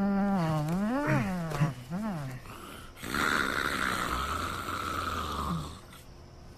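A man snoring loudly and theatrically: first a long, wavering, droning snore through the voice that rises and falls in pitch, then, from about three seconds in, a raspy, hissing breath over a low rattle that stops near the end.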